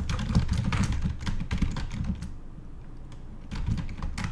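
Typing on a computer keyboard: a quick run of keystrokes for about two seconds, a short pause, then a few more keys near the end.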